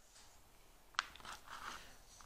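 Faint handling of wooden beads being threaded onto a cord with a needle: one sharp click about a second in, then soft rustling.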